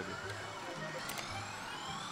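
Electronic sound effects from a SANKYO Valvrave pachislot machine: a long rising sweep over the steady din of a pachinko hall, with a couple of sharp clicks about a second in.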